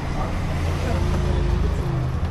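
A motor vehicle's engine running close by in street traffic, a low steady rumble, with a faint steady tone above it in the second half.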